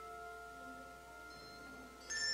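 Quiet instrumental music: sustained bell-like notes ringing on and slowly fading, with a few soft new notes joining in.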